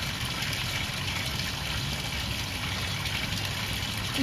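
Steady trickle and splash of water falling between the tiers of a barrel garden fountain.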